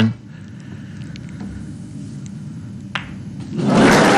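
Hushed snooker arena with a few faint clicks of cue and balls and one sharper ball click about three seconds in, then audience applause breaking out near the end as the pink is potted.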